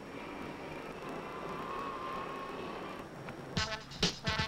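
Electric motor of a limousine's power partition whining as it moves the glass divider, starting at the press of a dashboard button and stopping about three seconds in. Music comes in near the end.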